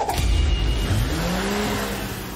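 Cartoon sound effect of the crocodile-shaped vehicle character speeding off in a spin. An engine revs, its pitch rising from about a second in, over a rushing noise.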